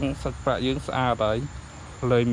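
A man's voice saying a few short words, over a steady high chirring of crickets.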